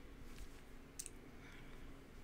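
A faint, sharp click about a second in, with a softer one just before it, over a low steady room hum.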